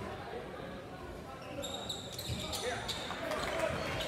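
Basketball game sounds on a hardwood court: a ball bouncing, then from about a second and a half in, repeated high squeaks of sneakers as players run, in an echoing gym.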